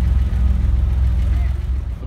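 Porsche 911 GT3 Cup race car's flat-six engine idling with a steady, deep, loud rumble.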